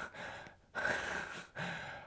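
A man's quiet, breathy laugh: three airy breaths out in quick succession, without voice.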